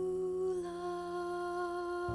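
A woman singing one long held note, steady in pitch apart from a slight dip about half a second in.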